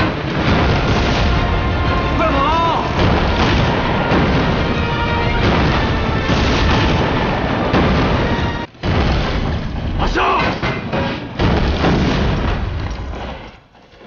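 Battle sound effects from a war drama: a continuous din of mortar fire, explosions and gunfire over dramatic background music, with a few brief shouts. The sound cuts out for an instant about two-thirds of the way through and fades near the end.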